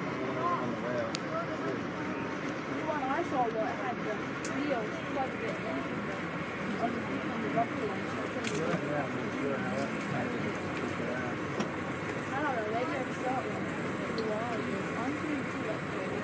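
Indistinct conversation inside a moving passenger rail car, over the train's steady running noise on the track, with a few faint clicks.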